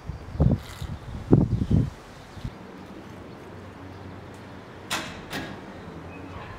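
Low thudding footsteps on a garden path in the first two seconds, then two sharp clicks about five seconds in from the latch of a garden gate being opened.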